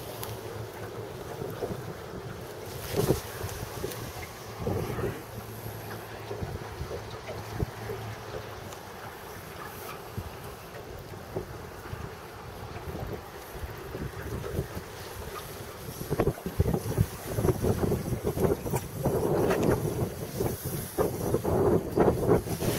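Wind buffeting the microphone over open, choppy water. The rumbling gusts grow louder and more irregular in the last several seconds.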